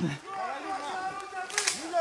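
Faint distant voices and rustling movement through forest leaf litter, with one brief sharp crack about one and a half seconds in.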